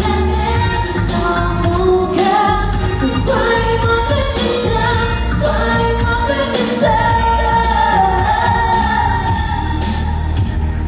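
A woman singing a pop song live through a PA over a steady, bass-heavy accompaniment, in a soundcheck run-through.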